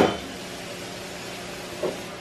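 Steady low hum and faint hiss of a saltwater reef aquarium's running pump and water circulation, with a short click at the very start.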